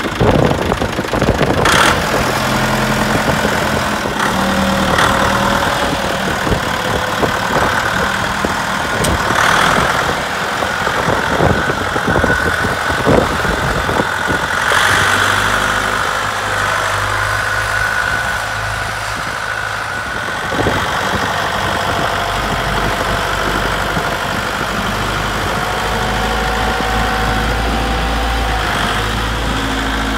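Dongfeng DF-404 compact tractor's diesel engine running steadily as the tractor moves and pushes snow with its front loader, with a few sharp clanks in the first half.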